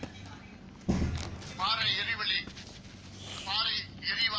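Speech in short phrases, with a low thud about a second in.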